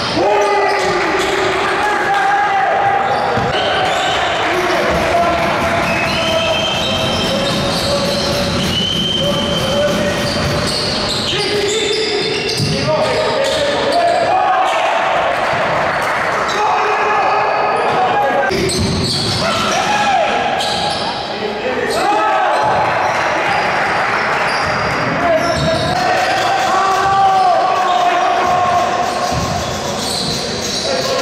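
Basketball game on an indoor hardwood court: the ball dribbling and players' sneakers squeaking, with players and coaches shouting throughout.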